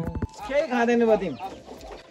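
A farmyard animal call: one drawn-out, wavering cry about a second long that falls in pitch at the end.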